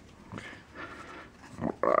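Magic: The Gathering cards rubbing softly against each other as a small stack is gathered and squared in the hands. A short, loud, gruff spoken sound comes near the end.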